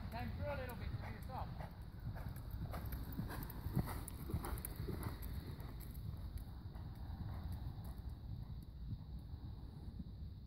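Horse's hooves striking a sand arena as it moves past at a canter, the hoofbeats clearest and loudest a few seconds in, then fading as it goes away.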